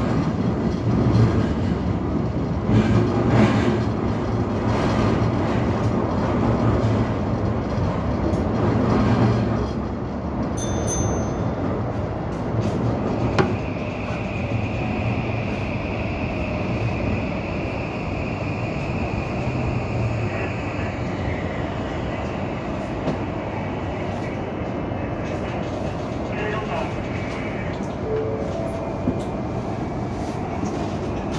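Toei Asakusa Line 5500-series subway train running through the tunnel with a low motor hum and regular wheel knocks over the rails. It then slows into the station and comes to a stop, with a steady high whine held for several seconds while it brakes.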